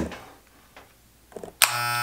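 Electric hair clippers switched on about one and a half seconds in after a few faint clicks, then running with a steady buzz: they work again after a blade change.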